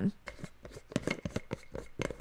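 Handling noise of a spice jar being picked up and moved: a quick, irregular run of light clicks and knocks.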